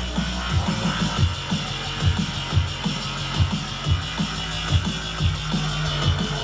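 Drum and bass DJ set playing loud over a club sound system, recorded from the dance floor: a fast breakbeat of sharp drum hits over a deep, held sub-bass line.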